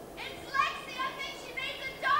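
Raised voices heard off-screen, high-pitched and unintelligible, in a quick run of short calls and shouts.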